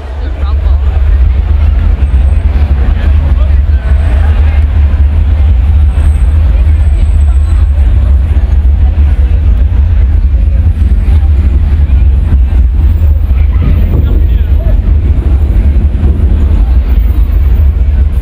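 A loud, steady, very deep rumble, with the voices of a crowd faint above it.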